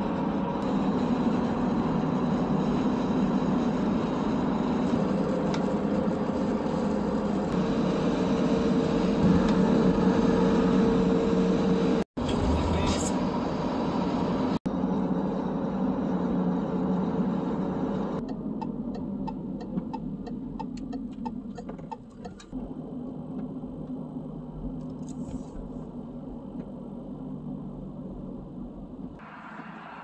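Steady road and engine noise inside a car's cabin at highway speed. About two-thirds of the way through it gives way to a quieter, duller sound with a brief run of fast clicks.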